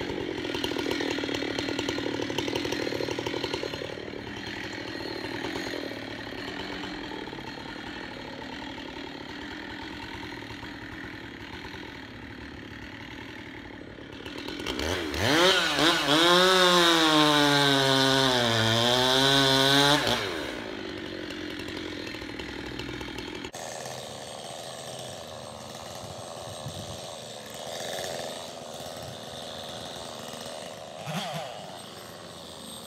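Husqvarna 390 XP two-stroke chainsaw idling. About halfway through it is run at full throttle through a cut for about five seconds, its pitch dipping under load and climbing again, then it drops back to idle.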